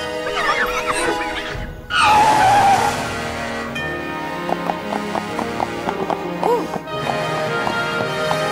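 Background film music with a whinny-like animal call, rising and falling, in the first second and a half. The music swells loudest around two seconds in.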